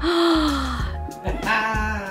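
A breathy, gasping exclamation of delight from a person's voice, falling in pitch, with a second short voiced sound near the end, over background music with a steady bass line.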